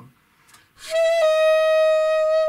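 Alto saxophone sounding one long held high note, top C fingered with the octave key. It begins with a breathy attack about a second in, settles in pitch just after, and then holds steady.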